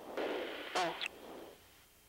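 Hiss of an open crew intercom channel, then a brief spoken "Oh" about a second in. The hiss fades out near the end.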